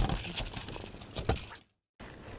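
A few sharp knocks and crackles on a bass boat deck over a steady hiss, then the sound cuts off abruptly.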